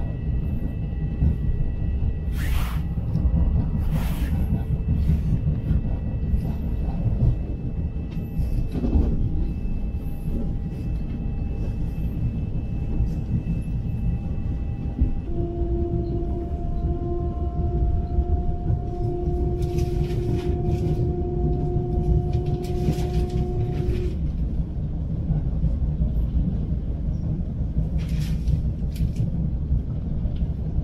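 Inside a Long Island Rail Road commuter train running at speed: a steady low rumble of wheels on rail, with scattered clicks and knocks. Steady whining tones run through the first half, and a lower whine takes over about halfway in and drops out a few seconds before the end.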